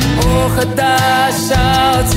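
Recorded music with a sung melody over instruments.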